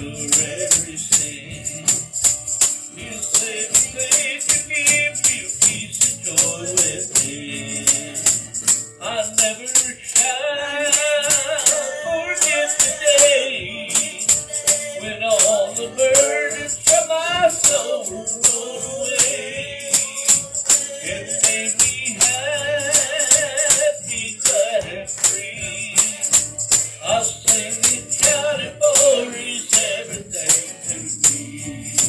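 Live worship music from a small band: acoustic guitar and drum kit with a steady, crisp high percussion beat. A man's singing voice comes in about eight seconds in and carries the melody.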